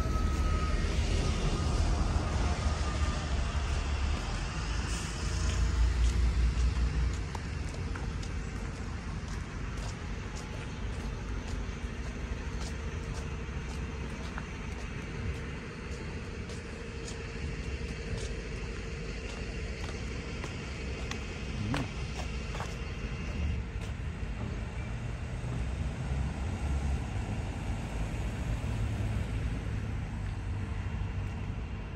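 Double-decker bus engines running close by amid street traffic: a low rumble, loudest for the first seven seconds or so, that then settles into a steadier, quieter hum.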